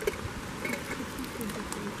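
Lull in a group's talk: a steady background hiss with faint, indistinct children's voices.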